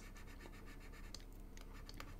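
Faint room tone, a low steady hum and hiss, with a few small scattered clicks.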